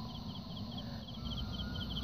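Faint chirping of a male fighting cricket: short chirps of a few quick pulses, repeated several times a second. It is stridulating after being tickled with a grass stalk to rouse it.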